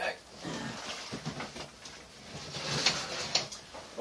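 A plastic seedling tray being moved and set down: rustling and handling noise, with a few sharp knocks about three seconds in.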